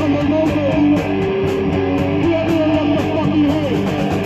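Live rock band playing: electric guitar through a Marshall amplifier, bass guitar and drum kit, with a steady beat of drum and cymbal hits under the guitar line.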